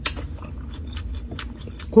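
Close-up chewing of a mouthful of napa cabbage wrap with spicy whelk salad: soft wet mouth sounds with a few faint clicks, over a low steady hum.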